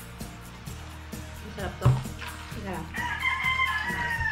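A long, high animal call, held level and then falling in pitch, from about three seconds in, over background music with a steady beat. A single sharp thump about two seconds in is the loudest sound.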